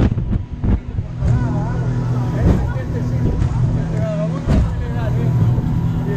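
Passenger speedboat's engine running steadily at speed, a constant low hum heard from inside the boat's cabin.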